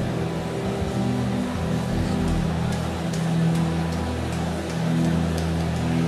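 A congregation praying aloud in the spirit all at once, many voices blending into a dense murmur, over sustained, steady chords of worship music.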